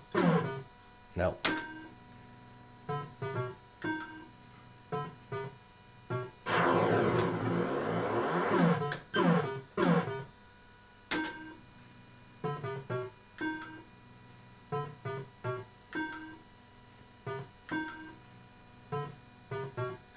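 Electrocoin Red Bar fruit machine running through games: a string of short electronic beeps and jingles as the reels spin and stop, with a longer, louder sweeping electronic sound about six and a half to nine seconds in.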